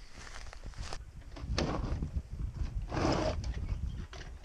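Footsteps swishing through tall grass, with two louder rustling swells about one and a half and three seconds in, over a steady low rumble.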